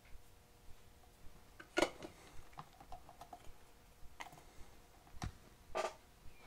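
Scattered small clicks and taps of hand tools and a circuit board being handled on a workbench, the loudest about two seconds in, with a few fainter ones later.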